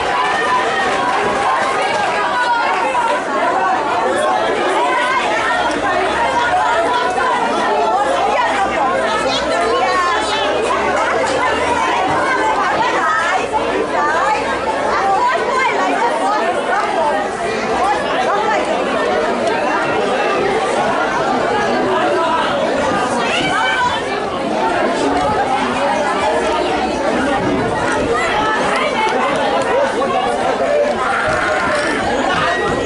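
Chatter of many spectators talking at once, overlapping voices at a steady level with no single voice standing out.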